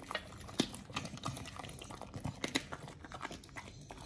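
Pit bull chewing and biting raw food, a run of irregular clicks and smacks with sharper bites about half a second in and again at about two and a half seconds.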